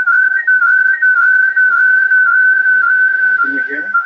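Audio feedback whistle from a participant's just-unmuted microphone on an online call: one loud, steady high-pitched tone with a slight waver in pitch. It comes across as a lot of background noise that drowns out the participant.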